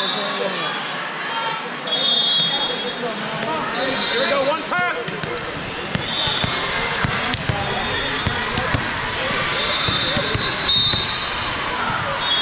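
Din of a volleyball tournament hall: many voices overlap while volleyballs are hit and bounce on the courts. Short high whistle blasts from referees sound several times.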